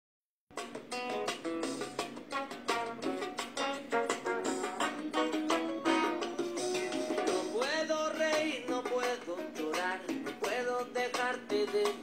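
A song with a singer playing through small mini Bluetooth speakers, thin-sounding with almost no bass. It starts about half a second in.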